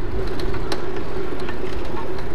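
Steady road and wind noise from a bicycle riding along a city street, with the faint steady hum of a car engine in traffic and a few light clicks.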